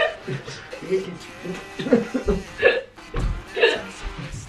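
People laughing in short, breathy bursts while straining in a partner yoga pose, over background music, with two low thuds in the second half.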